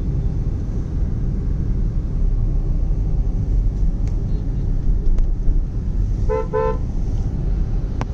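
Steady low rumble of a car driving in city traffic, heard from inside the car, with a vehicle horn tooting twice in quick succession about six seconds in.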